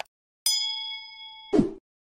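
Subscribe-button animation sound effects: a brief click, then a notification-bell ding that rings with several clear tones and fades over about a second. It is cut off by a short, low whoosh, the loudest sound here.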